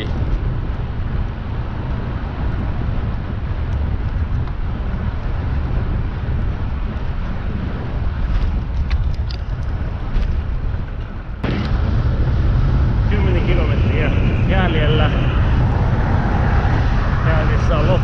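Wind rushing over the microphone of a bicycle-mounted camera with tyre-on-asphalt road noise while riding at speed, a steady low rumble that jumps louder about two-thirds of the way through.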